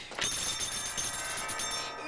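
A bell-like ringing chime starts suddenly just after the start and holds steady, with many high, ringing overtones.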